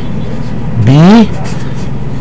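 A voice saying the letter "B" once, drawn out with a rise and fall in pitch, over a steady low hum.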